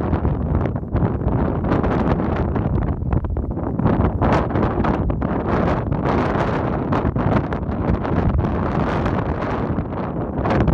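Strong gusting wind buffeting the microphone, a loud, rough rush that surges and eases unevenly.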